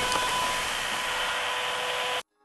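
Television static sound effect: a steady hiss of white noise with a few faint steady tones running through it.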